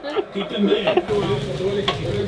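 Voices and laughter, then, from about a second in, noodles stir-frying in a black wok over a gas flame: sizzling and stirring with a steady low rumble, and one sharp clack of the utensil against the pan near the end.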